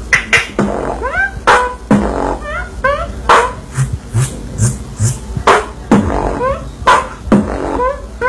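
Solo human beatboxing: mouth-made kick and snare hits in a quick rhythm, with short hissing hi-hat strokes and several rising, whistle-like pitch glides.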